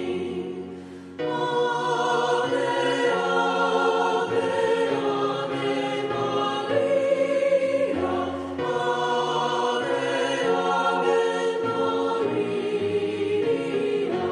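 Background choral music: a choir singing slow, held chords, with a short drop in level about a second in.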